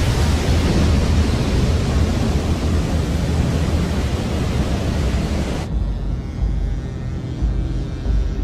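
Loud roar of a large breaking ocean wave, with music underneath. The surf noise stops abruptly about two-thirds of the way through, leaving the music over a low rumble.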